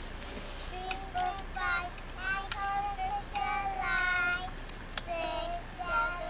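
A young child singing a simple song in a high voice with long held notes, starting about a second in, with a few sharp claps.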